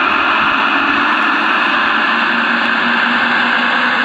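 Gauge 1 model Class 66 diesel locomotive's onboard sound unit playing a steady diesel engine sound through its speaker as the locomotive pushes the snow plough. A low hum joins in about halfway through.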